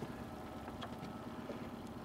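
Honda outboard motor idling steadily at low speed, with a few faint clicks over it.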